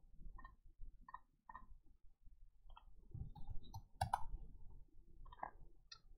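Faint, scattered clicks of a computer mouse and keyboard keys, a handful spread over several seconds, with a soft low rumble of desk handling in the middle.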